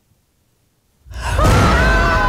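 Two women screaming together in fright, a long held scream that starts suddenly about a second in after a moment of near silence, with a deep rumble beneath it.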